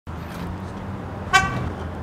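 A single short car horn toot a little over a second in, sounded from a remote keyless-entry fob, over a steady low hum.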